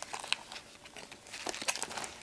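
Paper and card of a handmade paper bag mini album rustling, crinkling and tapping as it is handled and opened, a string of short irregular crinkles and clicks that thicken in the second half.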